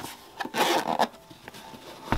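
Hands handling and starting to unzip a fabric-covered hard-shell camera case: a short rasp about half a second in, lasting about half a second, with a few light clicks around it.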